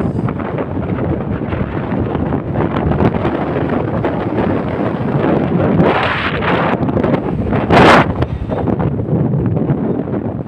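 Wind buffeting a phone's microphone high on a building facade: a loud, continuous rumbling noise, with a brief, sharper and louder burst a little before eight seconds in.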